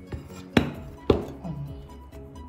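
Two sharp knocks about half a second apart as an upturned metal llanera mould and the plate beneath it come down on the table while the steamed meatloaf is being turned out. Background music plays throughout.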